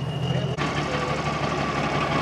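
Loaded dump truck's engine running at low speed as the truck pulls in, a steady low drone that changes abruptly about half a second in.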